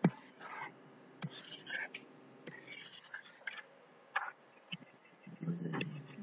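Scattered taps and short scratchy strokes of a stylus drawing lines on a tablet screen, opening with one sharp click. Soft hissing comes between the taps, and a low, mumbled voice begins near the end.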